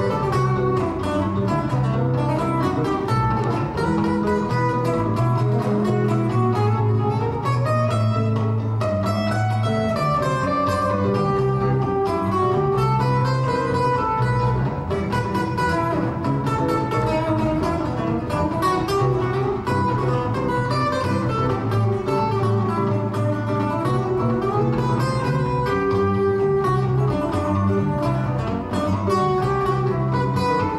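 Acoustic guitar and five-string electric bass playing an instrumental piece live, the bass carrying a steady low line under the plucked guitar.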